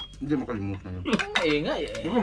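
Spoons and forks clinking on ceramic plates and bowls as people eat, a few short clinks, with a drawn-out voice rising and falling in pitch over them.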